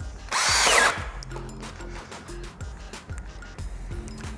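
Makita cordless drill with a large-diameter bit boring into timber at high speed under heavy load. The motor runs loud for well under a second near the start, its whine bending in pitch, followed by quieter grinding and knocks over background music.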